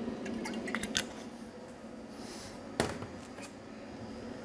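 Faint clicks and light taps from a glass olive oil bottle and a frying pan being handled as oil is poured into the pan, with one sharper knock about three seconds in.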